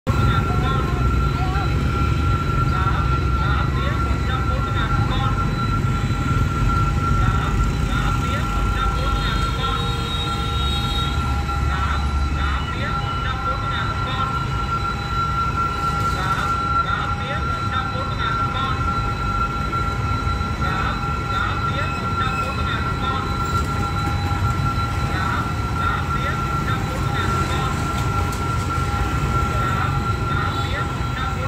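Railway level-crossing warning alarm sounding steadily, with the engines of motorbikes passing close by.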